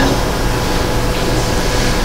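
Steady room noise in the pause between sentences: an even hiss with a faint low hum, typical of a hall's ventilation blower.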